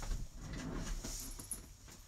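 Handling noise: faint rustling and a few light knocks and clicks of someone moving about at a table close to the microphone.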